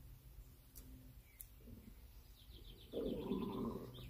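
A faint bird chirping in the background, a quick run of short high notes near the end, over a low steady hum. A louder low rustle comes in the last second.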